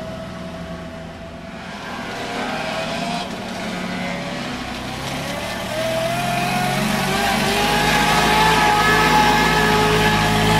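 Vintage Morris car's engine running as the car drives through a shallow ford, the wheels swishing through the water. The engine grows steadily louder as the car approaches, and its pitch rises from about halfway through as it pulls out of the water and up the road.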